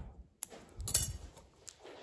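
Steel surgical scissors snipping a suture loop and clinking against other instruments: a few short, sharp clicks, the loudest about a second in.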